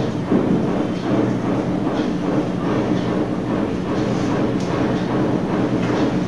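A steady mechanical hum over a low rumble, with a faint, constant pitched drone.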